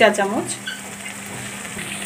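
Onion, garlic and ground spices frying in hot mustard oil with a little water in a wok, a steady bubbling sizzle.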